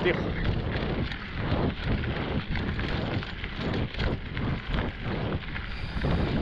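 Mountain bike rolling along a dirt trail: tyres on loose dirt and the bike rattling over small bumps, with wind noise on the microphone.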